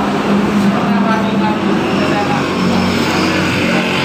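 A motor vehicle's engine running, a steady low hum that grows stronger in the second half, under background voices.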